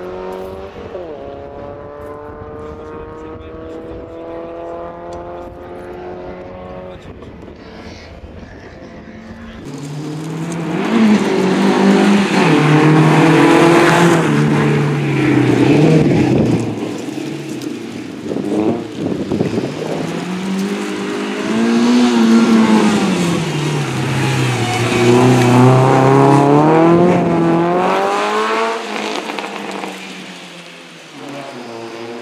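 Renault Clio Sport rally car's engine at full throttle. At first it is heard farther off, its pitch climbing through the gears; about ten seconds in it becomes much louder and closer, revs rising and dropping repeatedly through gear changes and braking for corners.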